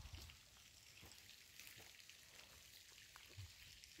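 Near silence: faint outdoor background hiss with a few soft low bumps.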